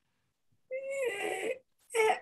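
A single high, drawn-out voice-like call, a little under a second long, starting about two-thirds of a second in.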